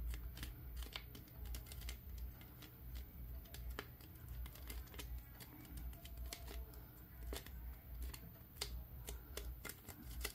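Thin plastic drink bottle held and shifted in the hands, giving faint, irregular crackles and clicks over a low steady hum.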